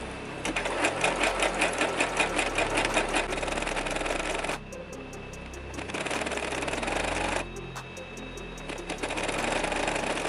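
Electric home sewing machine stitching the folded edge of a lace sleeve, a rapid even run of needle strokes. The first run lasts about four seconds, then it stops and starts again in two shorter runs with brief pauses between.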